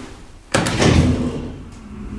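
A freight elevator's metal door slamming shut about half a second in: one loud bang that rings out for about a second.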